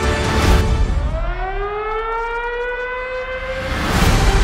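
A siren winding up, its pitch rising steeply from about a second in and then levelling off to a steady wail that cuts off just before the end. A heavy hit sounds about half a second in, and music plays underneath.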